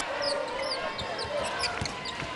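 Basketball dribbled on a hardwood court, with several short high squeaks of sneakers on the floor over steady arena crowd noise.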